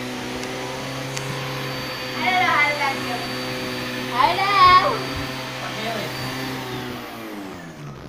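Small red canister vacuum cleaner running steadily with its hose nozzle on stair carpet, then winding down with a falling hum about seven seconds in as it is switched off.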